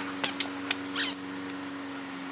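Dog giving a brief, faint whimper about a second in, with a few soft clicks, over a steady low hum.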